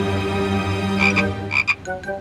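Cartoon frog croaking: a low, drawn-out croak, then two pairs of short high blips about a second and a second and a half in.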